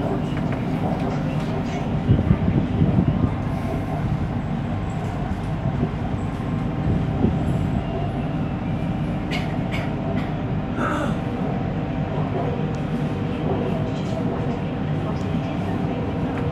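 MRT Kajang Line train running along an elevated viaduct, heard from inside the front car: a steady rumble of wheels on rail under a constant hum, with a rougher, louder patch about two seconds in and a few light clicks later on.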